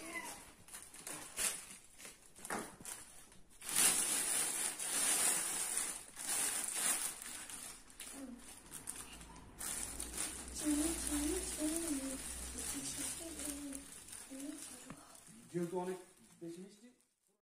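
Clear plastic bag crinkling and rustling as a loaf of bread is unwrapped from it. The rustling is loudest over several seconds in the first part, and a voice follows in the second half.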